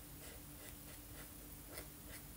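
Felt-tip marker rubbing on paper in quick, repeated colouring strokes, several a second, faint.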